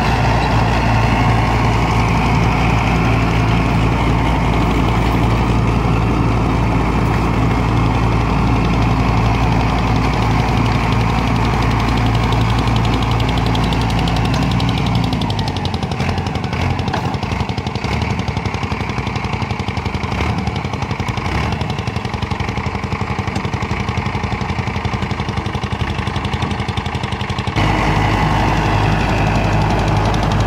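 Mahindra Arjun 555 DI tractor's four-cylinder diesel engine running steadily under load while driving an 8-foot Fieldking rotavator through the soil. About fifteen seconds in the deep engine note drops away to a thinner, rougher sound, and the deep note comes back about two seconds before the end.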